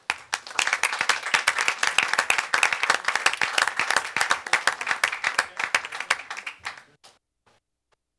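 A small group applauding, dense clapping that thins out and dies away about seven seconds in.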